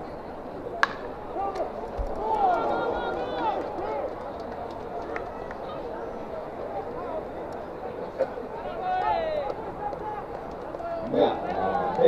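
Ballpark sound of indistinct spectators' and players' voices, with one sharp crack of a bat hitting the ball about a second in.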